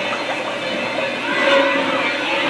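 Steady splashing and churning of water as the animatronic shark effect thrashes at the surface of a lagoon.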